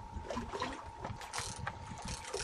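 Fishing reel clicking irregularly under load, with a bronze whaler shark hooked on the line.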